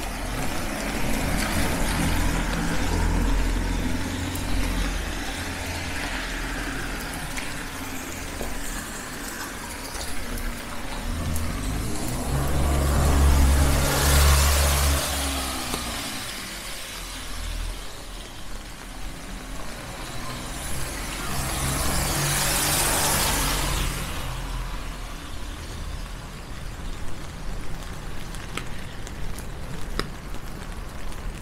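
Cars passing on a rain-soaked street: the hiss of tyres on wet asphalt swells and fades twice, loudest about halfway through and again a little later, over a low engine hum.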